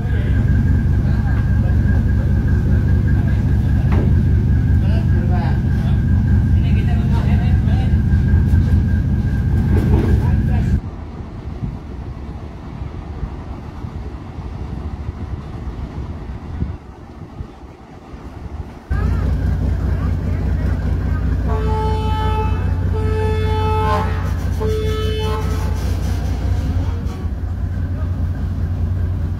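Passenger ferry's engines running with a heavy, steady low rumble that falls away for several seconds midway. Near the end a ship's horn gives three blasts in quick succession.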